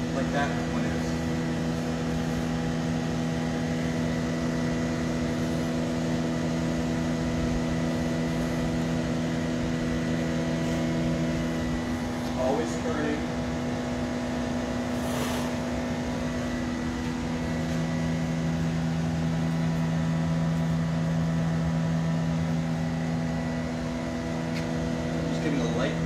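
Steady roar of a glassblowing studio's gas furnaces and blowers, with a deep layered hum. The lowest hum fades for a few seconds midway and then comes back.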